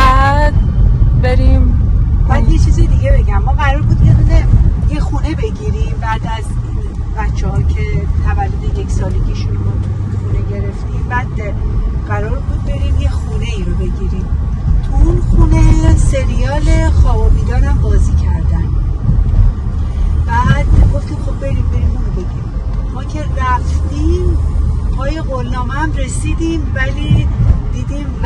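Steady low road and engine rumble inside a moving Hyundai's cabin, with voices talking now and then over it.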